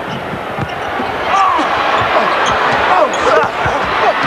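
Arena crowd noise with a basketball being dribbled on a hardwood court, a string of short knocks. The crowd gets louder about a second in.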